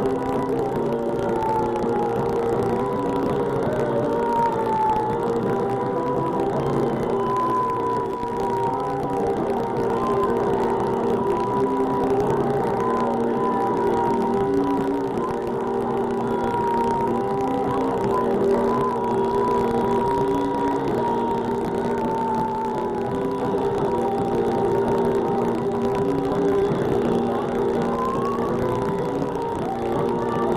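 Live rock band playing: distorted electric guitar, bass and drums hold droning chords, with a wavering high tone running above them.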